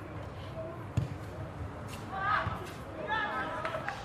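Voices calling out across a football pitch, with one sharp thump about a second in.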